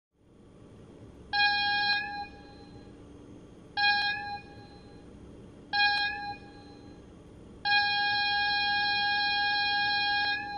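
Train whistle sounding three short toots and then one long toot on a single steady pitch, over a faint low rumble.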